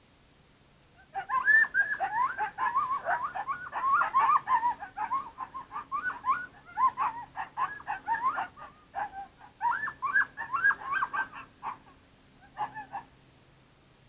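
Coyotes yipping and howling in a group chorus, many quick rising-and-falling yips overlapping, starting about a second in and running for some ten seconds, with a short break before a last brief burst.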